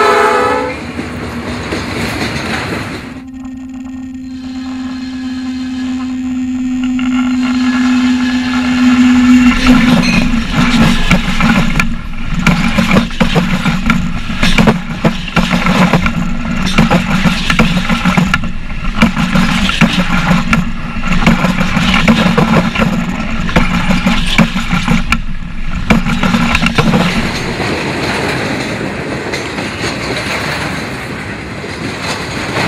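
A freight train of flatcars rolls by, its horn finishing just as the clip begins. From about ten seconds in, the wheels pass close overhead with a rapid, rhythmic clickety-clack and rumble that eases off near the end. Before that comes a steady hum of several seconds.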